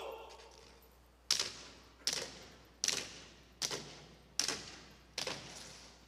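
Six heavy, evenly paced footfalls of a colour guard's hard-soled shoes marching on a stage, about one every 0.8 s, each echoing in the hall.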